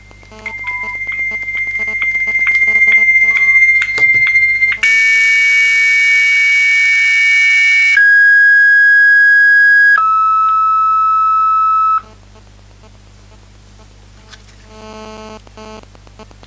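Dial-up modem handshake noises played through a Nokia 113 mobile phone's speakerphone: a steady high tone with regular clicks, then about three seconds of hissy noise, then two steady tones, each lower than the last, before cutting off suddenly about twelve seconds in. A low buzz of interference runs underneath.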